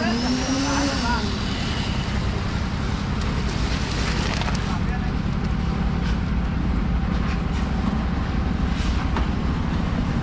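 A machine engine running steadily throughout, with a few sharp knocks scattered through it and a brief call from a voice in the first second.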